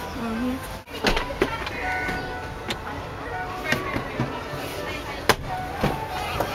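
Several sharp clicks and knocks from plastic trim being handled as the SUV's armrest and centre console are worked, the sharpest about five seconds in, over background talk and music.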